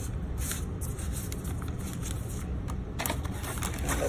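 Foil and paper drink-mix sachets being handled: rustling and sliding against one another as they are fanned in the hand and picked through in a box, with small scrapes that grow busier near the end.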